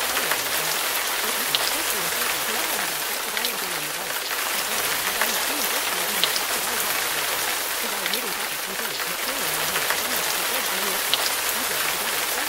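Steady rain noise with scattered drop ticks, laid over a quieter, blurred murmur of layered spoken affirmations.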